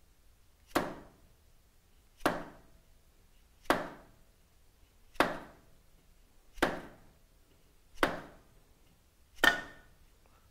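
Orange dead blow hammer tapping the rear rocker box housing of a Harley-Davidson Twin Cam engine seven times, evenly, about one knock every second and a half, the last the hardest. The knocks are breaking the old gasket's seal so the housing comes off the cylinder head.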